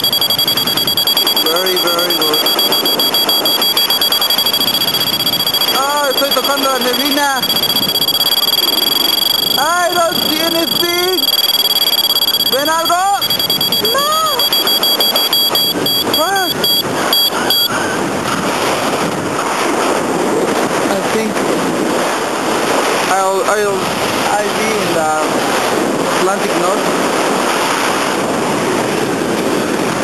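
Wind rushing over the microphone during a tandem paraglider flight, a steady loud noise, with brief voice-like calls now and then. A thin steady high tone runs alongside, stutters, and stops a little past halfway.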